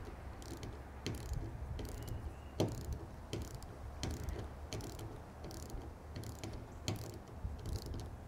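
Ratchet-head torque wrench tightening the small nuts on a fuel injector retaining plate. The ratchet pawl gives faint, irregular clicks, about one to two a second, as the nuts are torqued down to 27 inch-pounds.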